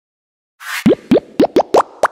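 Logo-intro sound effects: a short whoosh, then a quick run of five pops, each a short upward slide in pitch.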